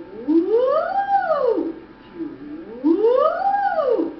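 A woman's voice singing two vocal sirens, a warm-up exercise for the vocal folds. Each siren slides smoothly up and back down over about a second and a half.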